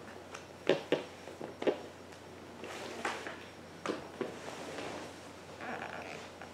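Handling noise as an electric guitar is picked up and settled into playing position: about half a dozen light knocks with soft rustling between them, over a faint steady low hum.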